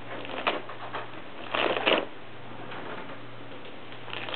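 A cat tearing tissue paper out of a tissue box with its teeth: short bursts of ripping and crinkling paper, a brief one early and the longest about a second and a half in. A faint steady hum runs underneath.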